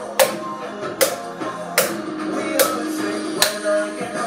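A wooden spoon beating on an upturned plastic bowl in a steady beat, five sharp strikes a little under a second apart, over guitar music.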